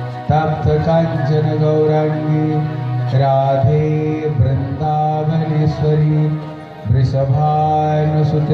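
Devotional mantra chanting sung to a melody: long held notes in phrases of a few seconds, with short breaks between them.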